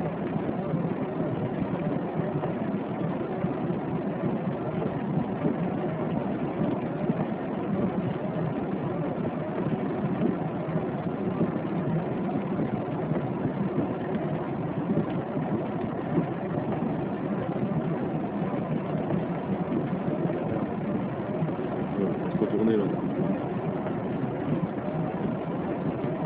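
Car engine idling steadily, heard from inside the cabin.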